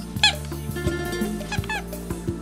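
A Shih Tzu giving short high-pitched whining yelps, one just after the start and another about a second and a half in, over a song with a steady beat.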